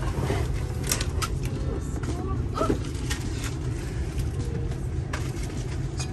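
Steady low rumble of a Ford-chassis Class C motorhome driving off, heard from inside the cab, with a few light clicks.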